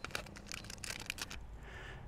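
Faint crinkling with scattered light ticks: the protective plastic film on an e-bike's handlebar display being handled.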